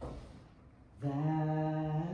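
A woman singing unaccompanied: after a short pause, a long low note held steady from about a second in.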